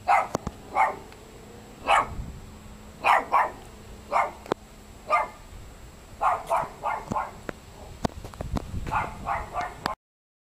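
A dog barking repeatedly, in single barks and quick runs of two or three, with a few sharp clicks between them.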